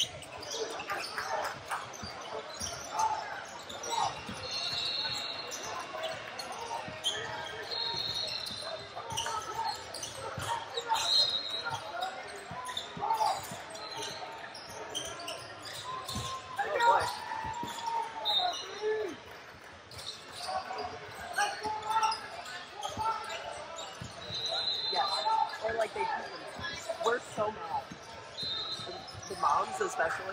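Basketballs bouncing on a hardwood court and sneakers squeaking in short high squeals, several times, among shouts and chatter from players and spectators, all echoing in a large gym.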